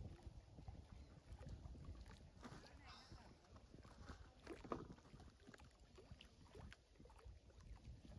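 Near silence: a faint low outdoor rumble, with faint distant voices a few seconds in.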